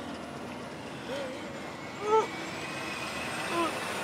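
Steady engine and road noise of a microbus, heard from inside the passenger cabin, with a few brief faint voices.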